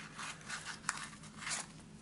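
Soft rustling and crinkling of white packing material being handled and pulled from a plastic coin tube of copper rounds, with a few small clicks.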